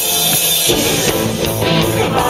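Live rock band playing, with electric guitar and drums; the full band comes in strongly a little over half a second in.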